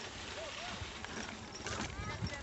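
Bicycle rolling along a rough dirt trail: tyre and trail noise with irregular knocks and rattles. Faint voices in the distance.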